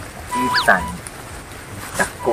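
Short whistle-like musical sound: a steady tone that swoops up sharply and back down about half a second in, followed by a quick warbling squeak.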